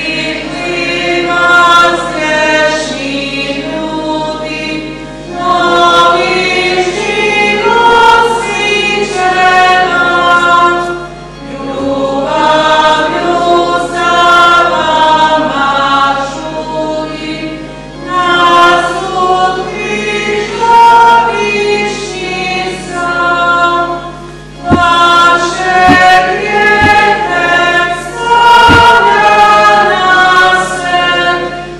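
Choir singing the entrance hymn of a Catholic Mass, in phrases of about six seconds with short breaths between them.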